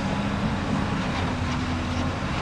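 An engine running steadily out of view, heard as a low rumble with a faint steady hum.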